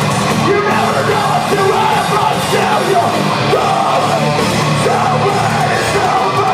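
Live metalcore band playing loudly: distorted electric guitars, bass and drums in a dense, steady wall of sound, with a vocalist yelling and singing over it.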